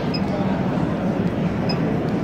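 Steady mechanical background hum, with two short high beeps from the pipe bender's control-panel keypad as its buttons are pressed.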